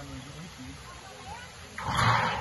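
Wind buffeting a phone microphone as a low, uneven rumble, with a sudden loud rush of noise near the end.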